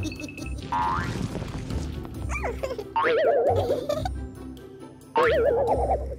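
Cartoon 'boing' sound effects with a wobbling, quavering pitch. They come twice, starting suddenly about three seconds in and again a little after five seconds, over light background music.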